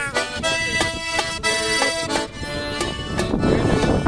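Piano accordion playing a lively melody over held chords, with a pair of drums struck along in a steady rhythm.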